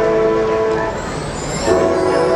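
Marching band's brass holding a loud sustained chord. It fades a little after about a second, then a new full chord comes in with a percussion hit near the end.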